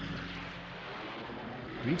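A steady rushing, airy sound effect from a film trailer as its title appears, with the low held notes of the score fading beneath it. A man's voice starts at the very end.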